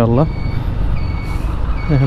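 TVS Stryker 125cc motorcycle riding in traffic: a steady low engine rumble with wind and road noise. A thin high beep repeats about every two-thirds of a second.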